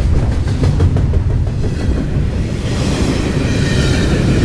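CSX double-stack container train rolling past close by: a loud, steady low rumble of steel wheels on rail. A higher hiss builds in about three seconds in.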